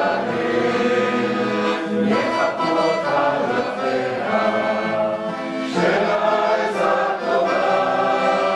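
A Hebrew song sung live by a male singer with a group of voices joining in, accompanied by piano accordion and nylon-string classical guitar, continuing without a break.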